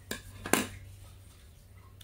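A large pair of metal scissors clicking twice, about half a second apart, with the second click louder, as they are handled and laid down on a tabletop.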